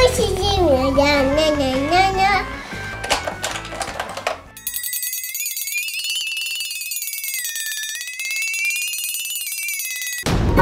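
Children's background music with a child's voice over it for the first few seconds. About five seconds in the music stops and a high, rapidly trilling shimmer sound effect takes over, wavering slightly up and down in pitch.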